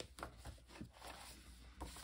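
Faint rustling and a few light taps of paper comic books being handled and gathered together by hand.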